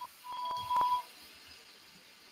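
A short electronic beep: one steady tone lasting almost a second, with two faint clicks during it.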